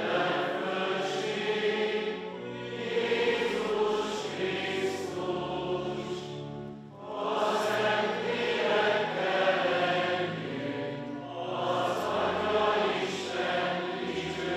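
Many voices singing a liturgical chant together in a church, in long sustained phrases with a brief breath pause about seven seconds in.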